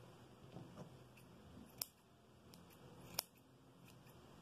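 Scissors snipping through the thick wool yarn of a pompom to trim it round: two crisp snips, about two seconds in and a little after three seconds, the second the louder, with faint rustling of the yarn being handled between.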